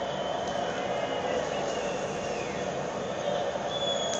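Steady crowd noise from a football match broadcast playing on a TV in the background.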